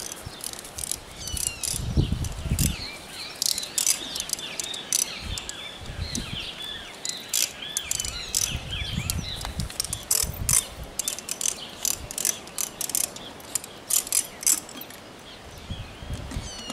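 Birds chirping and chattering in the trees, with many quick dry clicks throughout and a few low rumbles of outdoor noise near the start and in the middle.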